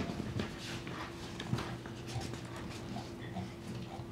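Paper pages being turned and handled close to a desk microphone: scattered soft clicks and rustles over quiet room tone with a faint steady hum.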